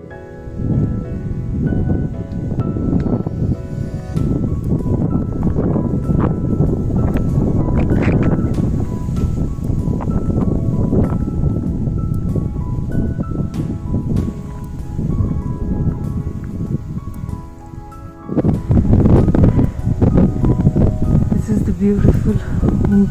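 Wind buffeting the microphone in loud, uneven gusts, with soft background music faintly underneath.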